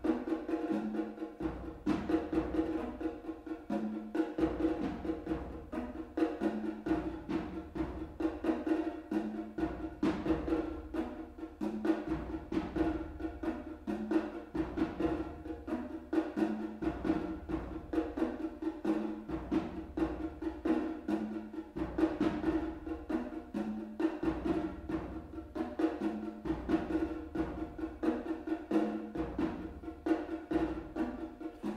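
Two players hand-drumming on congas in an interlocking, steadily repeating rhythm, with a lower drum stroke coming round about every one and a half seconds.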